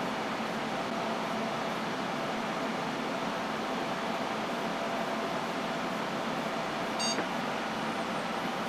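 Desktop computer's cooling fans running steadily during boot, with a short high beep about seven seconds in.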